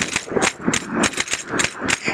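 A fast run of percussion strokes, about five hits a second, in a short instrumental gap between sung lines.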